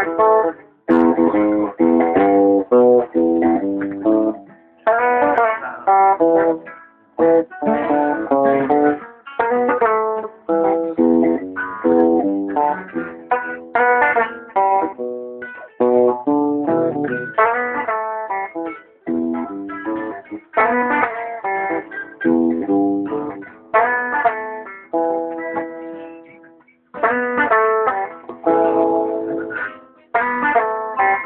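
Guitar played live: runs of quickly picked single notes in short phrases, with brief pauses between them.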